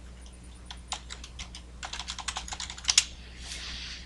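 Typing a password on a computer keyboard: scattered keystrokes, then a quicker run ending in two louder key presses about three seconds in, followed by a brief soft hiss.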